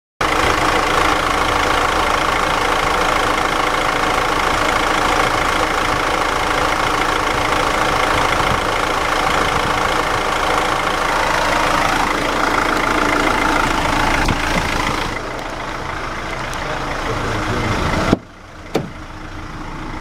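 Renault Master's 2.3-litre M9T four-cylinder turbo-diesel idling steadily during an engine test. About fifteen seconds in the sound turns duller and quieter, and near the end a sharp knock is followed by a sudden drop in level.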